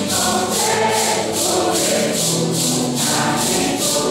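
A congregation of men and women singing a Santo Daime hymn together, with maracas shaken in a steady beat of about two to three shakes a second.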